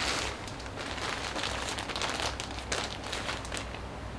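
Clear plastic zip-lock packaging bag crinkling and rustling as it is picked up and handled, an irregular run of small crackles.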